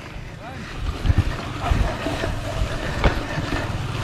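Wind rumbling on the microphone as a bicycle is ridden over a bumpy grass field, with the bike knocking and rattling over the bumps, a few sharper knocks among them.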